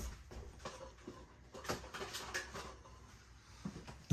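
Faint, scattered clicks and light taps of small objects being handled, over a low room hum.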